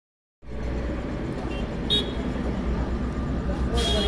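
Steady low engine-like hum under a busy background, with two short high-pitched toots, one about halfway through and one near the end.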